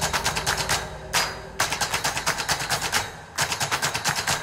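Rapid runs of sharp, clattering percussive strikes, many to the second, in several quick bursts separated by short gaps.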